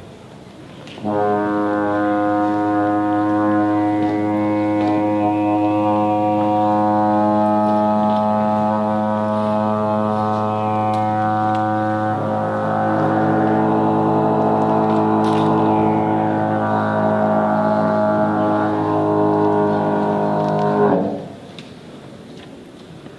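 A trombone holds one long, low, steady note for about twenty seconds. Around the middle the tone turns rougher and wavering, and the note stops a second before the end.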